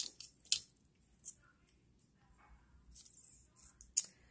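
Light plastic clicks and handling noise as a nail-drill bit is taken from its clear plastic bit holder: a few sharp clicks, one about half a second in and one just after a second, soft rustling in the second half, and another click at the very end.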